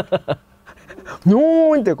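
A man laughing: a run of quick, breathy chuckles in the first moment, then one long drawn-out voiced sound near the end.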